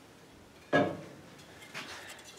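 A single short knock about two-thirds of a second in that dies away quickly, then faint handling noise: a wooden guitar neck being picked up from the bench.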